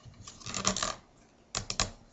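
Round reed being pulled up through the woven rim of a small basket, the reed rubbing and clicking against the weave in two short runs of clicks, the second just past halfway.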